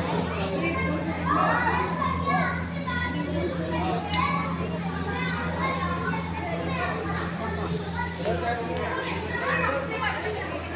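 Children's voices chattering and calling in a busy indoor hall, over a steady low hum.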